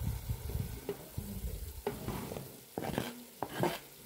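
A spoon stirring food in a cooking pot, with irregular scrapes and knocks against the pot.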